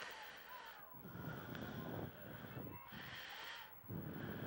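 Faint open-air ambience of a soccer match: distant players' shouts and calls carrying across the field over a steady wash of background noise.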